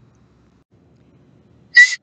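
Near silence, then near the end a short hissing 's' as a woman starts to speak.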